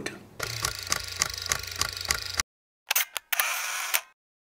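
Camera-click sound effect: a run of evenly spaced mechanical clicks, about five a second, over a low hum, cut off suddenly about two and a half seconds in. After a brief silence come two sharp shutter-like clicks and a short hiss.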